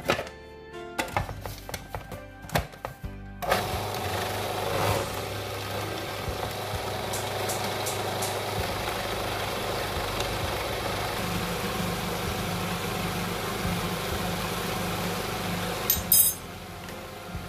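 Background music with a few knocks. About three and a half seconds in, an electric food processor switches on and runs steadily with a low hum, grinding pistachios and powdered sugar.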